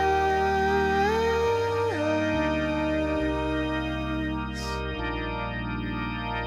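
Slow pop ballad: a male voice holds long sung notes over sustained organ chords, with a bass that steps slowly from one held note to the next.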